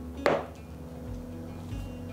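A glass marble knocks once onto the table, a sharp click about a quarter second in, over steady background music.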